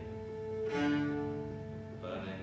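Cello bowed over a steady held drone: a low note swells in about two-thirds of a second in, peaks and fades away within a second.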